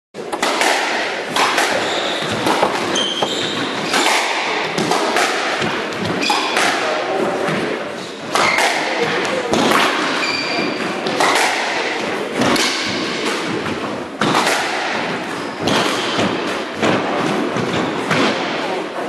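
A squash rally: the ball is struck by racquets and slaps off the walls about once a second or so, each hit echoing around the court. Short high squeaks, typical of court shoes on a wooden floor, come between the hits.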